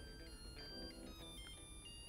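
Zojirushi pressure induction-heating rice cooker playing its faint electronic end-of-cooking melody, a short tune of stepping beeping notes that signals the rice is done.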